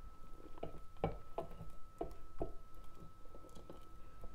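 Silicone spatula stirring and scraping a thick, pudding-like mix of melted-and-cooled stearic acid and grapeseed oil around a glass bowl: soft, wet strokes about two a second.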